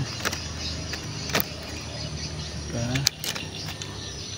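A low steady rumble like a motor running, with several sharp clicks and rustles from the camera moving among the tree's branches.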